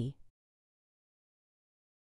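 Digital silence, after the last syllable of a spoken sentence dies away in the first fraction of a second.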